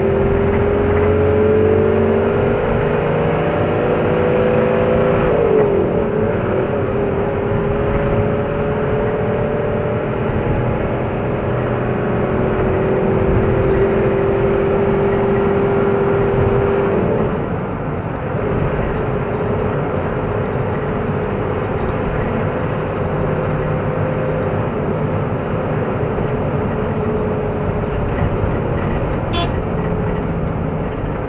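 Car engine and road noise heard from inside a moving car: a steady drone whose pitch wavers about five seconds in and drops about seventeen seconds in, as the engine speed changes.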